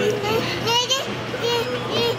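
Short, high-pitched child-like voice sounds, several in quick succession, over a steady low hum.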